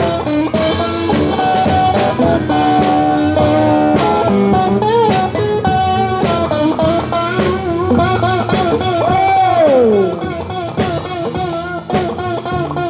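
Live blues band: an electric guitar plays an instrumental lead with string bends and vibrato over a drum kit. Near the end a held note slides down steeply in pitch.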